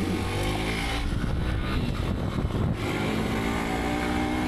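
Hero Xpulse 200 4V Pro's single-cylinder engine running steadily as the motorcycle rides along a dirt road.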